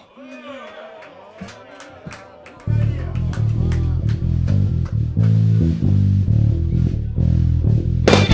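A live rock band opening a song: a quiet intro of gliding, bending guitar tones, then about two and a half seconds in the bass guitar and drums come in loud with a heavy riff.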